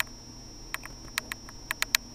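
Light, sharp clicks and taps, about seven at uneven spacing and bunched in the second half, from a fingertip tapping on the touchscreen of an LG Phoenix Android phone.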